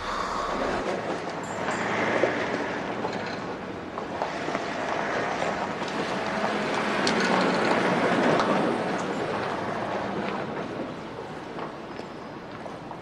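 Outdoor rushing noise that swells about two seconds in and again around seven to eight seconds, then eases, with faint footsteps near the end.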